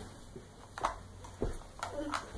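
A few light clicks and knocks from small plastic toys being handled, three short taps spread over the two seconds.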